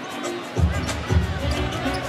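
A basketball being dribbled on a hardwood court, with arena music of held steady notes playing over the crowd.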